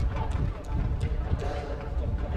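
Athletics stadium ambience: indistinct voices over a steady low rumble, with scattered sharp clicks at irregular intervals.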